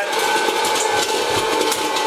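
Presto PopLite hot-air popcorn popper running: a steady fan-motor whine with a rush of hot air, and kernels popping inside it.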